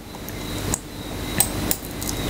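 A few short, sharp clicks from a computer mouse about a second and a half in, as the web page is scrolled and a verse is clicked.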